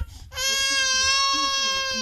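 Infant crying: one long, steady, high-pitched wail that starts about a third of a second in and is held to the end.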